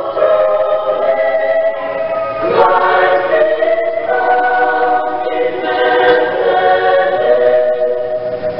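A choir singing in harmony: long held chords that shift to a new chord about every second or so, with no beat.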